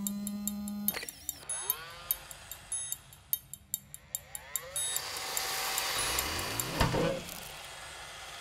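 Sound-designed film score: sharp ticks and clicks over a brief low buzz, then sweeping tones that swell into a loud hit about seven seconds in.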